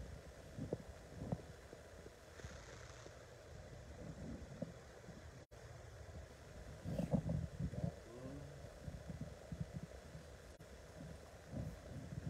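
Irregular low thuds and rustling of footsteps and handheld-camera handling while walking on a wood floor, heaviest about seven to eight seconds in.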